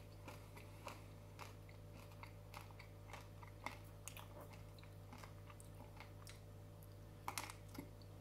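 Faint close-up chewing of fairy bread, white bread spread with butter and sugar sprinkles: irregular small crunches and mouth clicks, with a louder crunch about seven seconds in.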